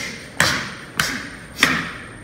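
Footwork on a wooden gym floor as a boxer steps and shifts stance laterally while shadowboxing: three sharp thumps about 0.6 s apart.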